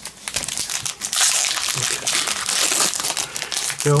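Crinkling foil wrapper of a Magic: The Gathering booster pack being torn open and peeled back from the cards. A few light clicks come first, then steady crinkling from about a second in.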